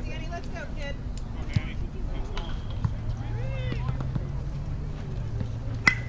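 Softball bat hitting a pitched ball near the end: a sharp crack followed by a brief ringing tone. A fainter sharp knock comes about a second and a half in.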